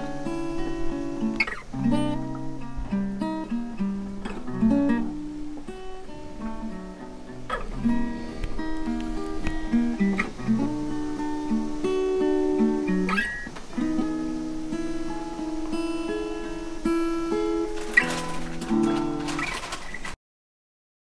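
Acoustic guitar music: plucked single notes and bass lines with a few strummed chords.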